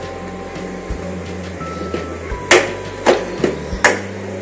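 Three sharp plastic clicks about two and a half, three and nearly four seconds in, from a DDR2 memory slot's retaining clips being pushed open to release a RAM module, over steady background music.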